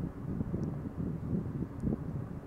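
Low, uneven background rumble, like wind or distant traffic on the microphone, with two faint ticks.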